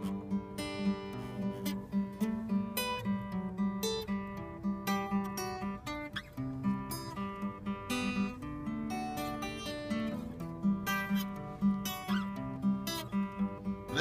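Steel-string acoustic guitar played with a pick in an instrumental passage, a steady rhythm of picked bass notes and strummed chords.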